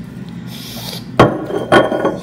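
A short, hissy, mouth-made slurping noise, then a glass bottle set down on a stone countertop with a loud knock a little over a second in and a second, lighter knock just after.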